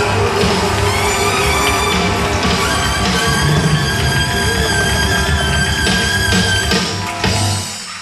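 Live band music with held chords over drums, with a few sharp drum accents. It dies away near the end.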